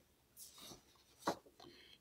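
Faint rustling of paper being handled, with a couple of short soft brushes, about half a second in and again just past a second in.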